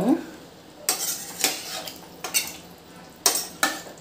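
Metal ladle stirring watery potato curry in a steel pressure cooker, clinking and scraping against the pot about five times at uneven intervals.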